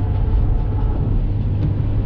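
Steady road and engine rumble inside a pickup truck's cab cruising on the highway at about 70 mph, with a constant low drone.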